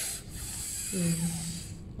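Close rubbing and rustling noise, with a short hummed "mm" from a woman's voice about a second in.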